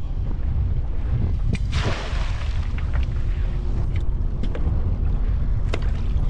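Wind rumbling on the microphone aboard a small boat. About two seconds in comes a short rushing splash as a wire crab trap is dropped overboard into the water.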